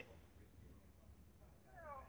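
Near silence with a faint low hum; near the end a faint voice begins over a phone's speaker.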